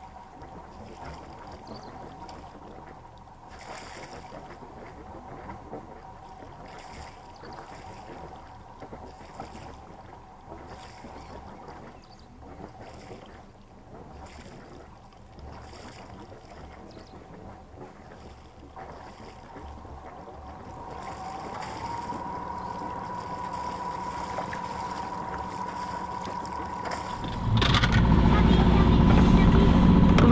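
A sailboat's inboard engine running steadily with a faint whine, picking up about two-thirds of the way through as the boat gets under way; near the end a loud low rumble comes in suddenly.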